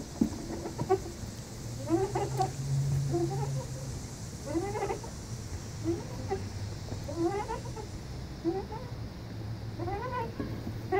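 Playground swing's metal chain hangers squeaking in a regular rhythm as the swing goes back and forth. Each squeak rises in pitch, and one comes about every second and a quarter.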